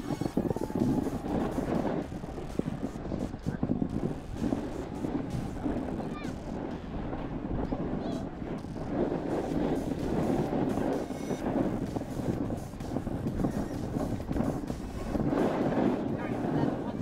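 Snowboard base and edges sliding and scraping over packed snow, with wind rushing over the helmet-camera microphone: a steady, uneven rush.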